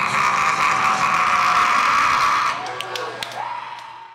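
Loud, sustained shouting that cuts off abruptly about two and a half seconds in. A few sharp clicks follow before the sound fades out.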